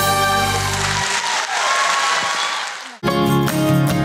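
A stage song's accompaniment ends about a second in, followed by audience applause that fades away. About three seconds in, different background music with plucked guitar cuts in abruptly.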